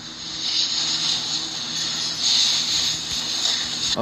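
Steady hiss with a faint low hum under it, swelling and easing slightly: the quiet soundtrack of a TV drama scene with no dialogue. A brief click comes at the very end.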